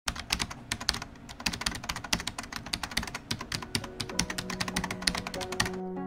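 Rapid, irregular typing clicks of a keyboard, several a second, stopping just before the end. Held music notes come in under them about two-thirds of the way through.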